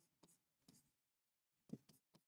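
Faint taps and scratches of a pen stylus writing on an interactive smart-board screen: a few short ticks, the loudest near the end.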